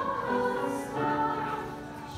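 Children's choir singing together, holding each note for about half a second before moving to the next.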